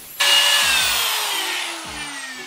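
Angle grinder whining loudly, starting abruptly just after the start, then falling steadily in pitch and fading as the motor winds down.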